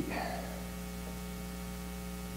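A steady low electrical hum, with fainter steady tones above it, through the sound system. The tail of a man's spoken word fades out in the first half second.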